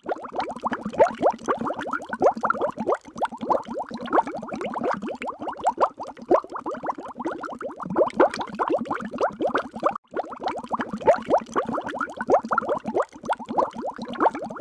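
A continuous bubbling sound: a dense run of very short, quick rising chirps, muffled, with nothing above about 2 kHz.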